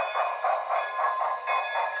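HO-scale 2-8-0 Consolidation model's Paragon3 sound decoder playing steam-locomotive chuffs, about four a second, over steady tones, through the model's small speaker.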